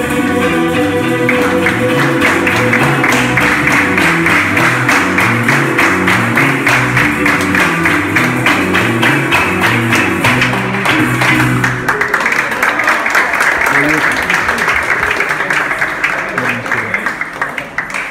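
Live Latin American folk band playing an instrumental passage: rapid strumming on a small guitar-like string instrument over moving electric bass notes and hand drums. The bass line stops about two-thirds of the way through while the strumming carries on and fades at the end.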